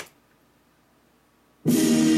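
A short click at the start, then near silence, then loud music that cuts in suddenly near the end with a held, sustained chord.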